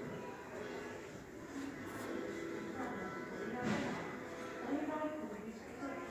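Background chatter of several indistinct voices talking at once.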